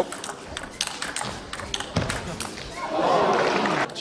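Table tennis ball being struck back and forth in a rally: a run of sharp clicks off bats and table, some with a duller knock. Near the end a crowd murmurs in the hall.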